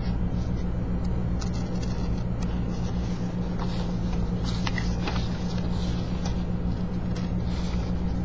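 Scissors snipping through a paper pattern, a scattering of short snips, over a steady low hum that is louder than the cuts.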